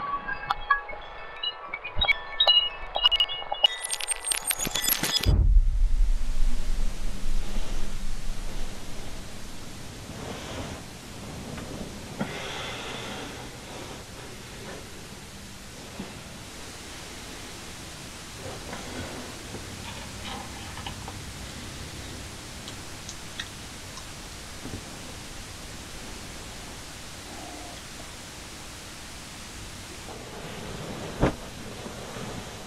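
Glass shattering on pavement with bright tinkling and clinks for the first few seconds, ending in a loud rush that cuts off suddenly about five seconds in. Then a steady hiss of rain, loud at first and settling to a soft, even level.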